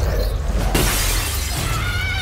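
A loud shattering crash, like something breaking, about three-quarters of a second in, over low trailer music. Near the end a high, wavering tone sets in.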